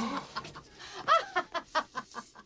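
A woman's high-pitched laughing and gasping, in short quick cackles that come faster toward the end.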